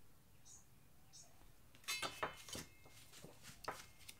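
Painting tools being handled at the work table: a few sharp knocks and clicks in the second half, the first with a brief metallic ring.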